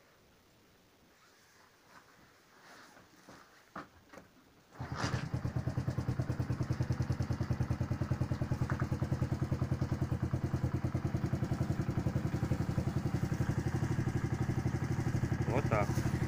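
A motorcycle engine starts about five seconds in, after a few faint clicks, and then idles steadily with a fast, even pulse.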